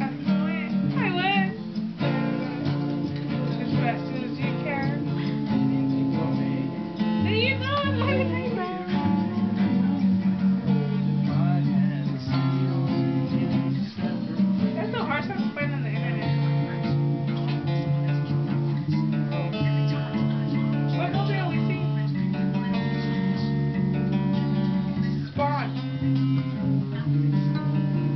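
Acoustic guitar strummed steadily through a song, with people's voices over it.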